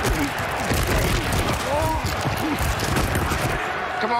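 Stadium crowd noise at a football game, with players' brief shouts and crackling impacts of pads and helmets during a tackle. It cuts off shortly before the end.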